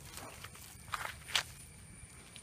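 A few short scuffing footsteps in flip-flops on damp garden ground, fairly faint.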